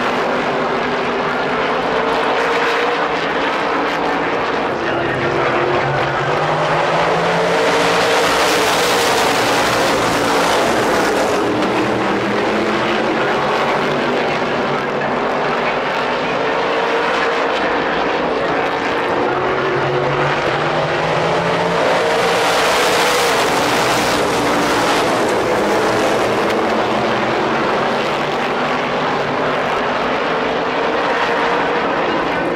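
A field of supermodified race cars with V8 engines running around the oval. The engine notes rise and fall in pitch, and the noise swells twice as the pack comes past.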